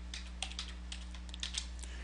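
Computer keyboard being typed on: a run of light, quick keystrokes as a password is entered, over a steady low hum.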